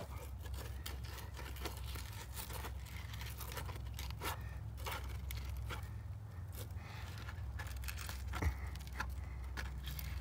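Gloved hand working the plastic speed levelers on the outlet pipes of a concrete septic distribution box, making scattered small clicks and scrapes with one sharper knock near the end, over a steady low rumble. The levelers are being turned to even out the effluent flow between the drain-field lines.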